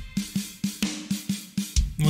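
Drum kit playing on its own in a jazzcore track: a quick even run of snare, kick and cymbal hits, about four a second.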